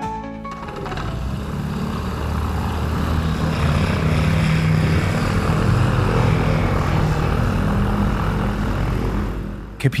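A steady engine-like drone with a rushing noise over it and a low, uneven rumble. A voice starts right at the end.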